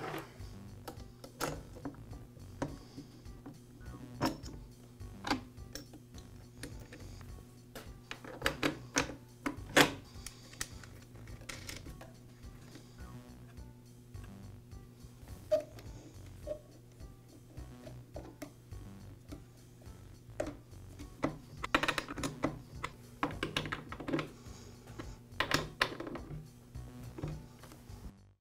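Scattered light clicks, taps and clatter of a chainsaw's steel chain, guide bar and plastic clutch cover being fitted by hand, with clusters of quick clicks as the bar nuts are threaded on and tightened, over a low steady hum.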